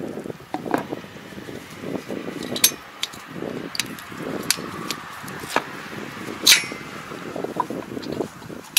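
Metallic clinks and clicks from gloved hands handling the gearbox casing and linkage of a Kobashi rotary tiller, a handful of sharp strikes with the loudest about six and a half seconds in.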